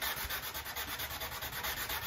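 Hand sanding block with 180-grit wet-and-dry paper scrubbing back and forth in quick, even strokes over a windsurf board's deck. It is flattening a cured solar-resin ding repair.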